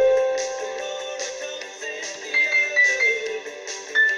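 Keyboard piano notes playing a simple repeated melody over fuller recorded music: one note held at the start, then several shorter, higher notes.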